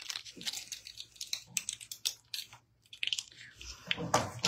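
A string of small irregular clicks and crinkles from hands handling a pair of earrings and their card backing, with a short pause a little past the middle.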